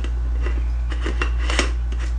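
A red plastic chick-feeder base being twisted onto a glass jar, making a few short clicks and scrapes of plastic on glass. A steady low hum runs underneath.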